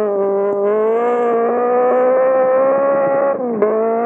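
Datsun 1600 (P510) rally car engine and exhaust running hard at high revs on gravel, the pitch holding and slowly rising. About three and a half seconds in the revs drop sharply, with a short sharp click, then climb again.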